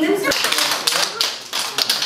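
A small group clapping their hands, uneven and scattered.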